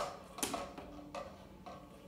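Faint, light clicks from a homemade coat-hanger balance scale as it is let go and settles: a sharper click at the start, then three softer ones spaced about half a second apart.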